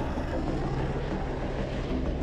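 Steady jet engine noise of the X-47B unmanned aircraft on its takeoff roll down a runway, an even rushing sound with a low hum underneath.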